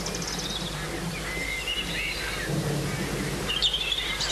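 Outdoor ambience: birds chirping over a steady low rumble and hiss, with a brighter run of chirps near the end.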